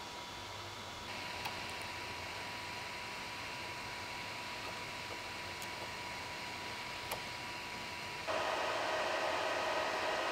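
Ender 3 V2 3D printer running: a steady fan hiss with a thin steady tone. It gets a little louder about a second in, and clearly louder about eight seconds in, where a higher whine joins as the print begins.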